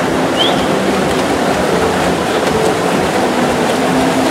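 Crowd din at a swimming race: many spectators cheering and shouting in an echoing indoor pool hall, blended with the splashing of the swimmers, a loud steady wash of noise. A short high rising call or whistle cuts through about half a second in.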